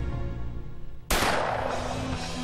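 Background music, broken about halfway through by a single loud rifle shot that rings out and fades over about half a second.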